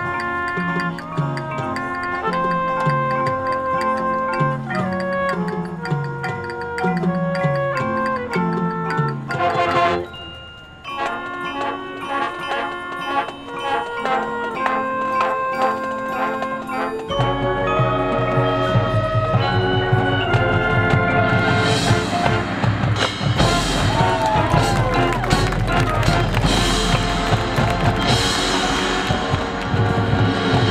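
High school marching band music: the front ensemble's mallet instruments (marimbas, xylophone, glockenspiel) play a passage with a repeating stepping bass line, breaking off briefly near ten seconds. About seventeen seconds in, the full band of brass and drums comes in, and the music grows louder and fuller.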